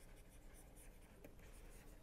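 Very faint sound of a stylus writing on a tablet screen, light scratches and taps over near silence.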